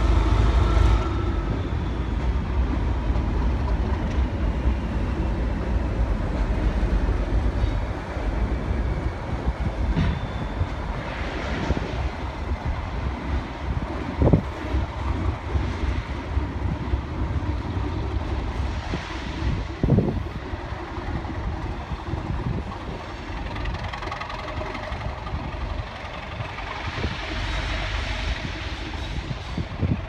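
Diesel-hauled test train passing: steady low engine rumble and wheel noise on the rails, with a few sharp knocks as the coaches go by. The rear diesel locomotive's engine comes through more strongly near the end.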